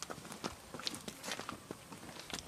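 Footsteps on a gravel and dirt road: irregular crunching steps of people walking, several a second.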